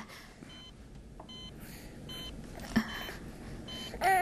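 Hospital patient monitor beeping at the incubator: short, steady electronic beeps repeating a little under a second apart.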